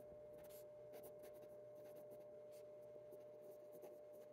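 Fountain pen's medium nib writing on paper: faint, light scratching as the words are written, over a faint steady hum.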